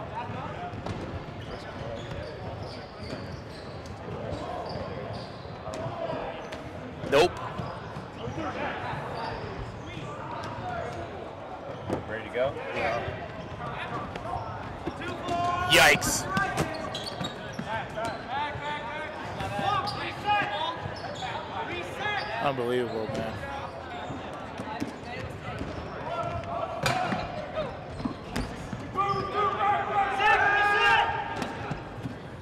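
Dodgeball game in a large echoing gym: rubber dodgeballs bouncing and smacking on the hardwood floor and off players, under players' shouts and calls. Two sharp ball impacts stand out, about 7 and 16 seconds in.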